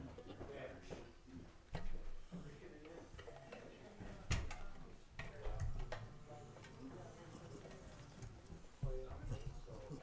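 Low background chatter in a large hall, broken by a few sharp knocks and clicks as instruments and gear are handled. The loudest knocks come about two seconds in, near the middle and near the end.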